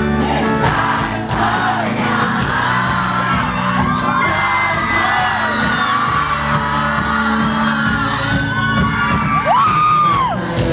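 Live pop-rock performance: a man sings over a strummed acoustic-electric guitar through the PA, with high-pitched voices from the crowd cheering and singing along near the microphone.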